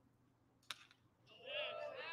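Quiet ballpark ambience, then one sharp crack about two-thirds of a second in: the impact of a pitched baseball. Near the end a voice calls out in the distance.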